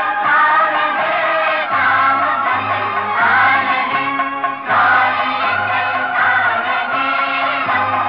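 Old Hindi film song playing: several voices singing together with musical accompaniment.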